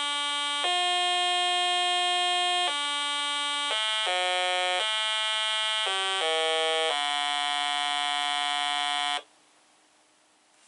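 Science Fair Microcomputer Trainer's speaker playing a slow tune of buzzy electronic tones, one held note at a time, as it runs a program downloaded from a TI-99/4A. About nine notes change in pitch, the last held longest before the tune stops abruptly near the end.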